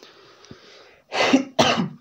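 A man coughs twice in quick succession, a little over a second in.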